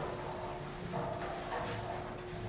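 Footsteps walking along a carpeted hallway, a soft step about every half second, over a faint steady hum.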